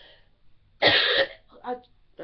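A woman coughs once, loudly, about a second in, followed by a short voiced sound from her throat.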